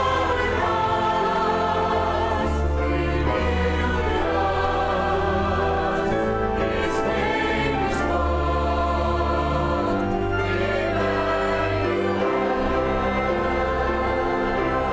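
Mixed church choir singing with a string ensemble of violins, cello and double bass accompanying, in sustained chords at a steady level.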